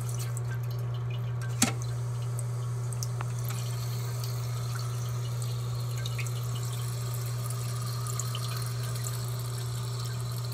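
Water dripping from a leaking fitting under a toilet tank: one sharp drop about a second and a half in, then a few faint ones. A steady low hum runs underneath.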